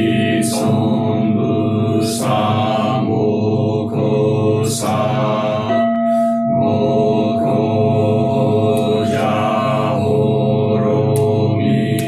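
A group of voices chanting a Buddhist sutra or dharani in unison on a steady monotone, phrase after phrase with brief breaks for breath.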